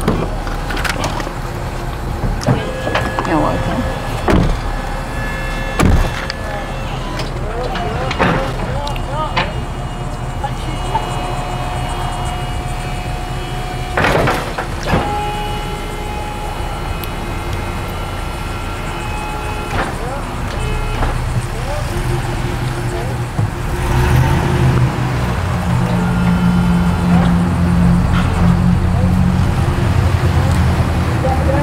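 Wheel-lift tow truck engine running, with scattered door and handling clunks. In the last several seconds a louder, steady low engine drone builds up.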